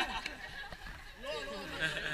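Several people talking quietly, with scattered voices and chatter from a group standing around in the open.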